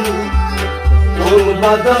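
Kashmiri Sufi folk music: a harmonium holding sustained chords with a bowed stringed instrument, over a drum beating low strokes about every half second, and a voice singing.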